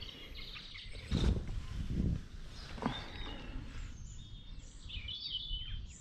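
Outdoor country ambience with birds chirping in the background, and a few brief low rustling bursts in the first half.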